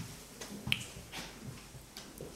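Footsteps on a laminate floor, a soft knock about every half second, with one sharp click about two-thirds of a second in.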